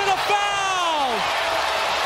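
Arena crowd cheering a made three-pointer, rising to a steady din through the second half. Over the first second a man's voice holds one long shout that falls in pitch.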